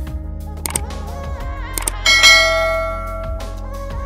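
Background music with subscribe-button sound effects: two pairs of mouse clicks, then a notification bell chime about two seconds in that rings out slowly.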